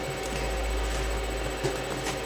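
Steady hiss with a low rumble, with no distinct knocks or tones: background noise picked up by the microphone in a small room.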